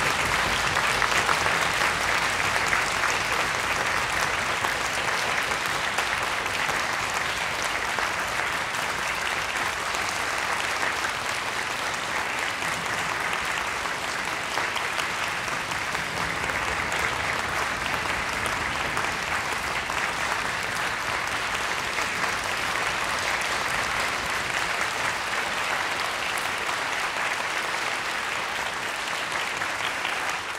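Audience applauding, a little louder in the first few seconds and then steady.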